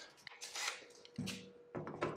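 Faint handling noises from a cordless drill and the hardware around it: a few brief rustles and clicks as the drill, fitted with a larger twist bit for deburring, is lifted and set against a drilled hole in the aluminium hull. A faint steady hum runs underneath.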